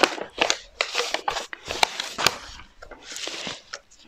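Paper and bookbinding board being handled on a cutting mat: crinkling and rustling of the sheets with small taps and knocks, and a longer sliding rustle about three seconds in.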